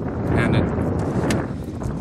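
Wind buffeting the microphone as a steady low rumble, with a brief voice about half a second in and a single click a little over a second in.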